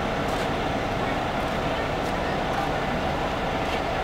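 Steady low rumble and hum inside a coach bus, from its engine and air system running.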